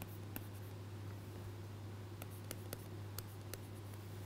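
Pen stylus tapping and scratching on a tablet as short arrows are drawn: a handful of sharp ticks over a steady low hum.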